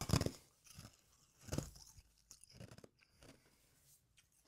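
A person's mouth noises close to a microphone: a handful of short, irregular sounds, loudest near the start and growing fainter.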